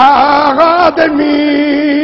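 A man's voice chanting in a sung, melodic style, the pitch wavering with vibrato, then settling into one long held note about a second in.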